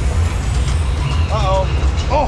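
Steady low rumble from a river rapids raft on the move: water rushing through the channel and air buffeting the boat-mounted camera's microphone. A rider's short voiced call comes about one and a half seconds in.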